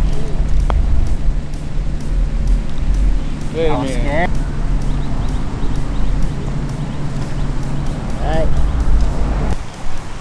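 Wind buffeting the microphone under a steady low hum, with the single sharp click of a putter striking a golf ball about a second in. Short vocal calls come near the middle and again near the end.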